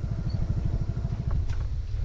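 Motorcycle engine running under way, a low, even pulse that smooths into a steadier rumble about one and a half seconds in, with a single short click near that point.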